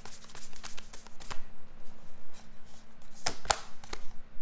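A deck of cards being shuffled by hand: a quick run of riffling flicks and taps, with two sharper card snaps a little after three seconds in.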